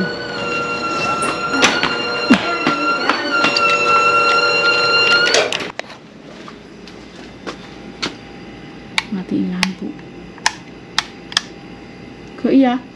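A loud, steady whine cuts off abruptly about halfway through. Then comes a quieter stretch with several sharp clicks as wall light switches are pressed.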